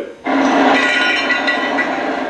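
Steady mechanical noise with a high whine, starting a moment after a brief drop in level, heard through a TV speaker.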